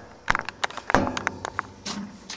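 Handling noise inside a heat pump's outdoor unit: the camera brushing and knocking against copper tubing and wires, a scatter of light clicks and taps, the loudest about a second in.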